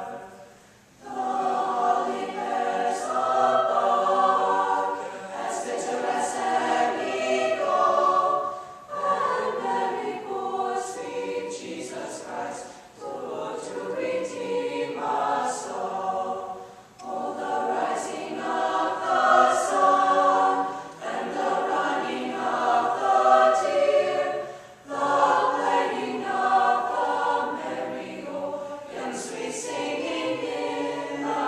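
Mixed choir of young men and women singing a cappella. The singing comes in phrases that begin about a second in, with brief breaks between them, and the 's' consonants are clearly heard.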